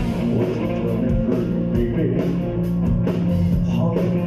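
Live rock band playing loud: electric guitars, bass and drum kit, heard from the crowd in a club.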